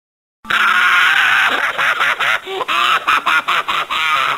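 A high, squawky, voice-like sound, thin and tinny, cutting in abruptly about half a second in and breaking into rapid choppy stutters in the second half.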